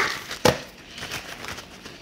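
A single sharp click or tap about half a second in, followed by faint rustling of wrapping being handled.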